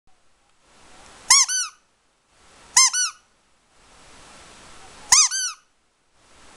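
A squeaky toy squeezed three times, each squeeze giving a quick high double squeak that rises and falls, with a soft hiss of air before each.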